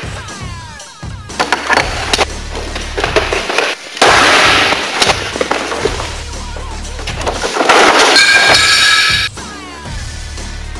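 Film soundtrack music with a steady low bass, cut by sudden loud crashing bursts, the loudest about four seconds in and another lasting over a second near the end.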